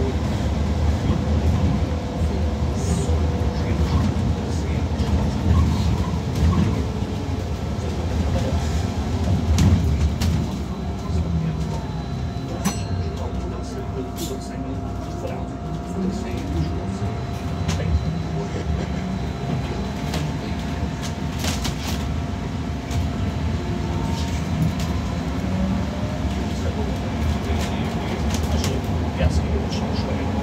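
Inside a Wright GB Kite Hydroliner hydrogen fuel-cell electric double-decker bus on the move: a steady low rumble of road and body noise with scattered rattles. Over it runs a thin drive whine that holds steady and now and then rises or falls in pitch as the bus changes speed.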